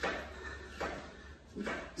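Faint rustling and shuffling as a man shifts his weight and lowers into a wide push-up on a hardwood floor, over a low steady room hum.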